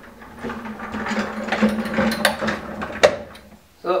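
Small swivel castors under a heavy two-speaker guitar combo amp rolling across a tiled floor: a steady rumbling rattle with many small clicks, and one sharp click about three seconds in.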